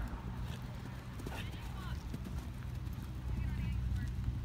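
Hoofbeats of a horse cantering on sand arena footing, heard against indistinct background voices and a steady low rumble.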